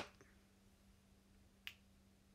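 Near silence with a faint steady hum, broken once, late on, by a single short sharp click.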